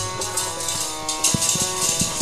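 Instrumental passage of Sikh kirtan with no singing: a harmonium holds steady chords over tabla strokes and a jingling rattle-like percussion.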